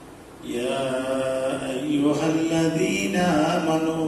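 A man chanting in Arabic into a microphone, in a slow melodic line of long held notes, starting about half a second in after a brief pause.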